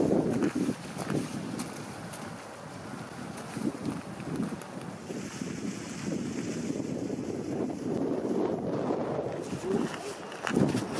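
Wind buffeting the camera microphone in gusts. For a few seconds mid-way, water splashes and pours off a small water wheel.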